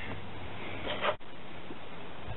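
Steady, featureless background noise of the open-air recording, with no distinct event. It drops out sharply for a moment a little over a second in, where the recording is cut.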